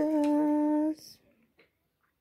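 A woman humming one steady note for about a second, which then cuts off.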